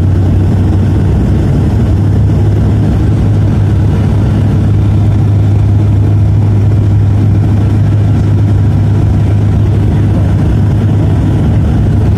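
Steady, loud cabin drone of a high-wing turboprop airliner in flight: the engines and propellers give a strong low hum over a broad rushing noise. The hum steps up slightly in pitch about a second in. The aircraft is descending with its landing gear extended.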